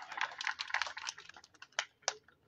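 Scattered hand clapping from a small audience: a dense patter of claps that thins to a few last claps near the end.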